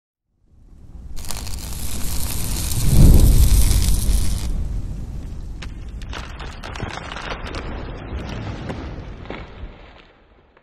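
Logo-reveal sound effect: a low rumble and hiss swell to a boom about three seconds in, then give way to scattered crackles that fade out.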